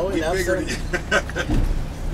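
Safari van's engine running steadily while driving, heard from inside the cabin with the windows open. There is a low bump about one and a half seconds in.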